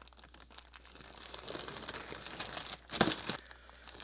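Plastic packaging crinkling and rustling as a poly mailer and a small clear plastic parts bag are handled and opened, with a sharper crackle about three seconds in.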